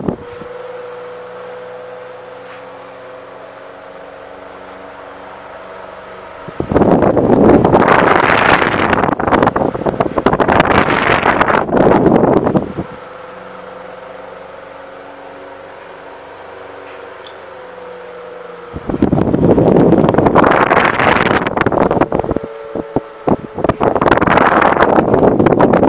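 GE Vortalex oscillating desk fan running, with a steady motor hum and whine. Twice, as the head swings toward the microphone, its airflow blows on the mic as a loud rushing of wind for about six seconds, then fades back to the hum.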